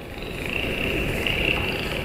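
Dolphin sounds from a music-video soundtrack: a high, steady whistle over a low rumbling, water-like ambience.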